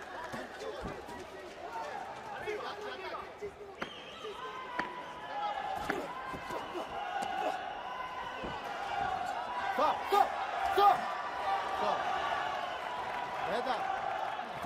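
Boxing bout heard from ringside: repeated sharp thuds of punches landing and boxers' feet on the canvas, over indistinct voices calling out from the corners and crowd.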